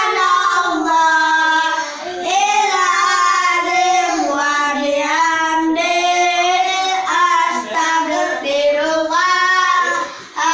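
A group of young children singing an Islamic sholawat (devotional song in praise of the Prophet) together without instruments, in phrases with short breaks.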